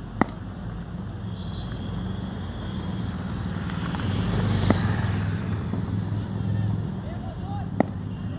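Three sharp knocks of a cricket bat striking a ball: one just after the start, one near the middle, one near the end, over a steady low rumble.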